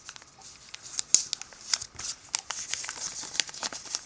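Sheet of origami paper being folded and creased by hand: irregular light crinkles and sharp little clicks as a small corner is bent down and pressed flat.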